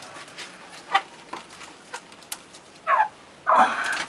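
Chukar partridges in a pen giving a few short, sharp clucks, then a brief call that bends in pitch about three seconds in and a louder, harsher call just before the end.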